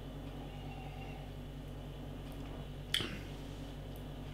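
Quiet room tone with a steady low hum while a glass of stout is sipped, and one short click about three seconds in.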